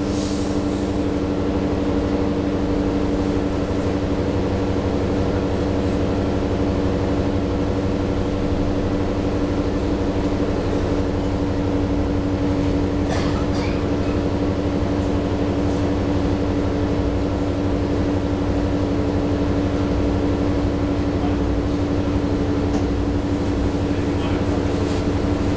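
Steady hum inside the cabin of a New Flyer XDE40 diesel-electric hybrid bus standing still, its Cummins L9 diesel engine idling.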